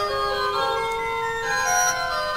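Pipe organ music on the Hildebrandt organ in Störmthal: several notes held together, the upper voices stepping to new notes every half second or so.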